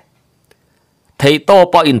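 Near silence for about a second, then a man's voice resumes narrating.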